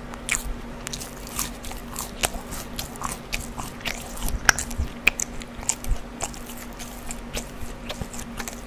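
Close-miked chewing of a crinkle-cut french fry: a quick, irregular run of small crunches and wet mouth clicks, with one louder crunch about four and a half seconds in.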